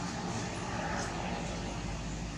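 A steady engine drone with a low hum, swelling slightly about halfway through, with faint voices behind it.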